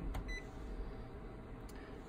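Office copier's touchscreen giving one short faint beep as a button is pressed, about a third of a second in, over a low steady hum, with a faint tick near the end.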